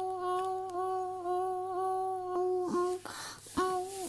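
A child's voice humming one steady note, held for about two and a half seconds, then a breathy rush of air about three seconds in before the hum starts again. The hum imitates a level-crossing warning signal, which elsewhere it sounds in short pulses about twice a second.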